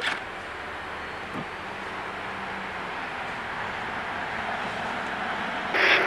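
Power-fold third-row seat motors of a 2017 Ford Explorer Limited running as the seats stow themselves at the push of a button: a steady mechanical whir that grows slightly louder, with a small click about a second and a half in.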